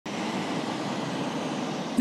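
Business jet's engines running, a steady, even jet-engine noise without change in pitch.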